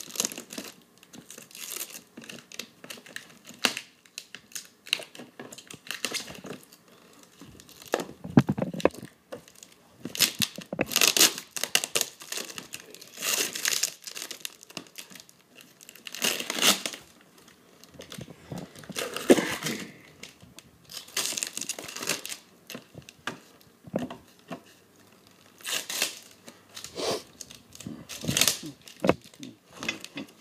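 Tape and plastic wrap being pulled, torn and crinkled off a hard plastic carrying case, in short irregular bursts.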